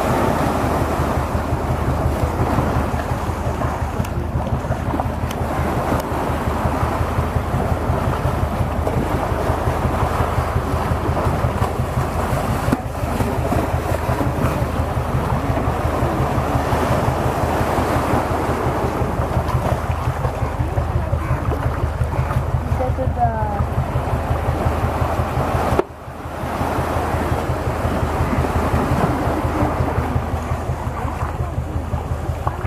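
Shallow surf washing and splashing around the feet, with wind on the microphone, over a steady low, evenly pulsing throb like an idling boat engine. The sound drops out briefly near the end.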